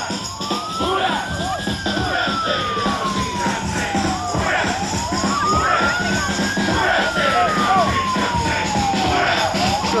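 Emergency vehicle siren in a slow wail: the pitch climbs quickly, then sinks slowly, twice in full, with a third rise starting near the end. Crowd chatter runs underneath.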